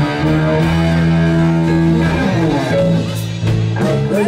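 Live band playing a slow blues instrumental: electric guitar out front over bass guitar and drums.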